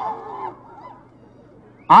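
A pause in a man's speech through a public-address loudspeaker system. His last word fades out with a short echo in the first half-second, and then only faint background noise remains until he starts speaking again near the end.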